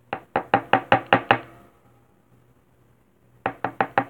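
Two quick runs of knocking on a hollow surface, each rap with a short ring: seven fast raps in the first second and a half, then four more near the end.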